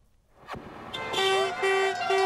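Near silence and a single click, then from about a second in, horns blowing steady, overlapping tones, some sliding in pitch. These are the honking horns and plastic noisemaker horns of a picket line.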